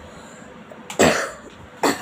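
A person coughing twice, two short loud coughs about a second in and near the end.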